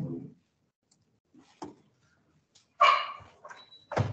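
A dog barking once, sharply, about three seconds in, after a near-silent stretch with a few faint clicks.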